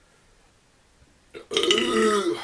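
A man belching loudly, starting about one and a half seconds in, after faint room tone.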